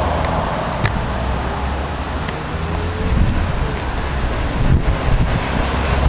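A steady low outdoor rumble, like wind on the microphone or distant traffic, with a few faint clicks: one about a second in and a small cluster near the end.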